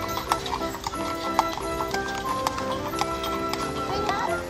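Hooves of two carriage horses clip-clopping on asphalt as the carriage passes, with music of held notes playing throughout.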